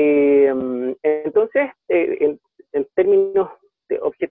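Speech only: a man talking, starting with a long drawn-out "eh".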